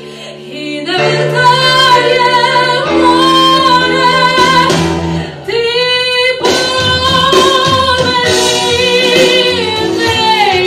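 A woman singing a pop song into a microphone over instrumental accompaniment, holding long notes. The voice is quieter in the first second and breaks off briefly about five and a half seconds in.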